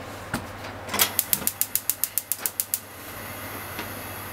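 Gas stove igniter clicking rapidly and evenly, about seven clicks a second for nearly two seconds. The burner then catches and settles into a steady hiss.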